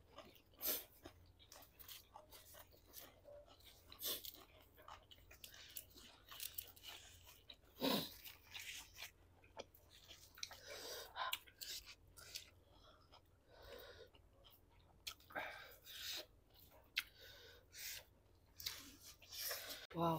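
Faint chewing and crunching of food, noodles and raw vegetables, as people eat: irregular short mouth sounds and crunches throughout, a few louder ones about 8 and 11 seconds in.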